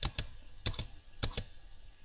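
Six short, sharp clicks at a computer, in three quick pairs about half a second apart, as the presentation is advanced to the next slide.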